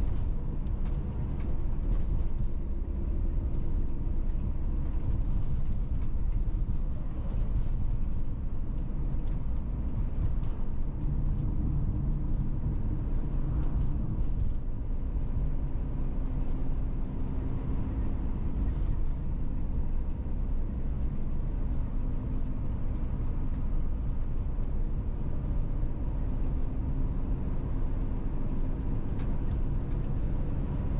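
A car driving steadily at road speed, heard from inside the cabin: an even, low rumble of tyres on asphalt and engine hum with no sharp events.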